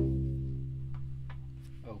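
Cello's open C string plucked once, a low C that rings and slowly fades.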